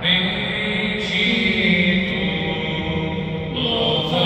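Slow devotional chant: voices holding long, steady notes that change pitch only every second or two.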